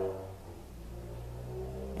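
A low, steady hum, with a man's voice trailing off in the first half second.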